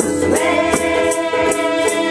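A small ukulele band playing: several ukuleles strummed in a steady rhythm, about four strokes a second, while voices sing the melody together.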